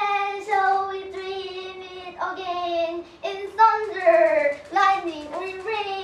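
A girl's high voice chanting in a drawn-out sing-song, in several phrases of long held notes that slide downward in pitch.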